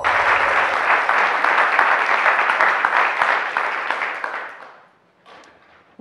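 Audience applause that starts all at once, holds for about four seconds, then fades out about five seconds in.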